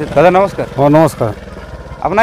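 A man speaking two short phrases over a low, steady rumble, which carries on alone near the end.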